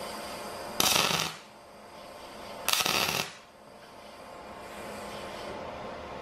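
Two short MIG-brazing stitch welds from a Fronius TransSteel 2200, each about half a second of arc noise set by the welder's trigger timer, about two seconds apart, over a steady background hum.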